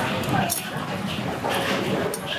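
Indistinct background voices murmuring, with a few faint clicks.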